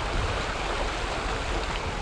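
A small river rushing steadily, an even wash of water noise.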